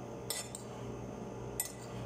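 A metal spoon clinking against a ceramic bowl twice, just over a second apart, over a steady low hum.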